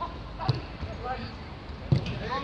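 Football kicked twice on the pitch: two dull thuds about a second and a half apart, the second louder, over players' voices.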